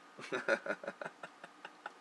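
A man's stifled laughter behind his hand: a run of short, uneven breathy bursts.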